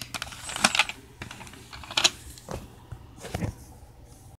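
A handful of irregular taps and rustles from a phone being handled close to its microphone.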